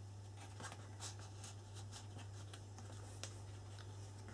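Fingers handling the card and paper pages of a handmade scrapbook album: faint, scattered soft rustles and light ticks, over a steady low hum.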